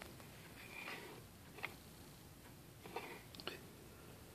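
Faint handling noises from a multimeter test probe being moved into place over a breadboard: a few light clicks and a couple of short soft rustles, with the last two clicks close together near the end.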